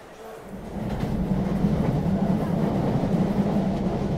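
Steady rumble of a passenger train running, heard from inside the carriage; it swells up about half a second in and then holds steady.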